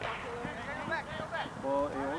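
Several voices calling and shouting across a soccer field during play.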